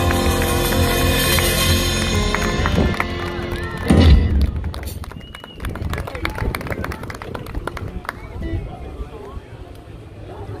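Live blues band with harmonica playing the last bars of a song, ending on a loud final hit about four seconds in. Scattered applause and crowd voices follow.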